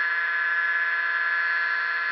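Reed-switched Bedini-style pulse motor running at a steady speed on one coil, giving an even, high-pitched buzzing whine.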